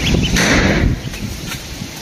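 Week-old ducklings peeping faintly, with a short burst of noise about half a second in; the sound drops quieter after about a second.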